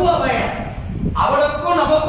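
A man speaking in Tamil, delivering a religious lecture into a microphone, with a short pause just before the middle.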